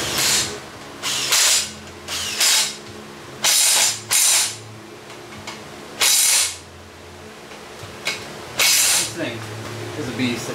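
Cordless power tool run in about eight short bursts of roughly half a second each on the flex plate bolts of a GM LS V8. The bolts are well worn from repeated impacting.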